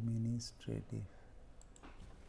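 A man's voice: a held, level-pitched hesitation sound like "um", then two short syllables, followed by a few faint clicks.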